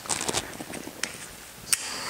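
A few small clicks and ticks, then one sharp click near the end followed by a steady hiss: a handheld torch being lit and starting to burn.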